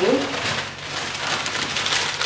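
Plastic shopping bag and paper wrapping crinkling and rustling as an item is pulled out and unwrapped.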